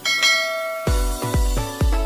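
A bright bell-like notification chime rings once and fades within the first second. Then an electronic dance track with a deep kick drum, about two beats a second, starts up.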